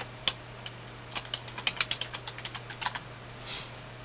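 Typing on a computer keyboard: a quick, uneven run of keystrokes, thickest between about one and three seconds in, over a steady low hum.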